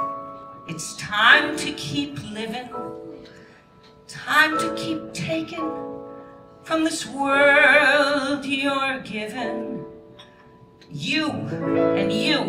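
A woman singing a show tune with wide vibrato over piano accompaniment. Her phrases are broken by short pauses, and a strong held passage comes near the end.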